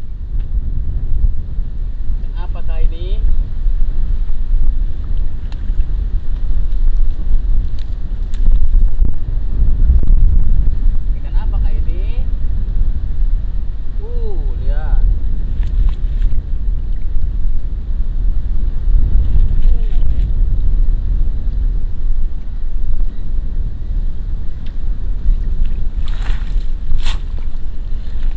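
Wind buffeting the microphone, a loud steady low rumble, with a few brief faint voices calling out now and then and some sharp clicks near the end.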